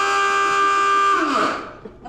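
A shipboard alarm horn on an engine-room signal unit sounding a loud, steady tone. In the second half its pitch sags and it dies away as it winds down.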